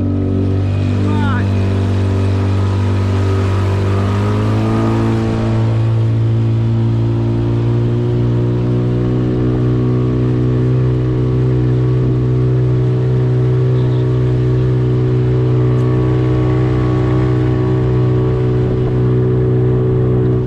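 Small boat's outboard motor running under way. Its pitch rises about four seconds in as it speeds up, then holds steady.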